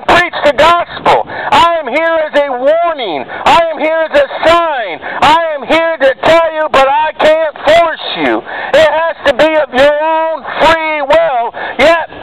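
Loud, shouted preaching voice running on without a pause, heavily distorted, with crackling clicks throughout.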